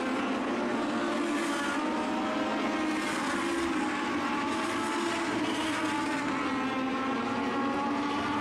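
Several Legend race cars' motorcycle-derived four-cylinder engines running at racing speed around a short oval, a steady high-revving drone whose pitch drifts gently up and down as the cars lap.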